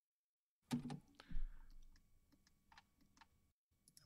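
Faint clicks of a computer mouse and keyboard, about half a dozen spread over a few seconds, after a brief soft vocal sound about a second in.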